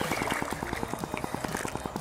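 A hooked small largemouth bass splashing at the surface as it is reeled in, over a fast, even ticking from the spinning reel being cranked.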